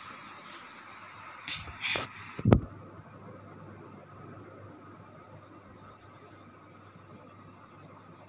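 A single sharp knock about two and a half seconds in, the loudest sound, just after two softer bumps. Under it there is a faint steady hum with a high chirp repeating evenly a few times a second.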